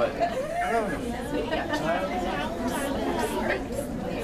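Crowd chatter: many people talking at once in a room, their voices overlapping into an indistinct murmur.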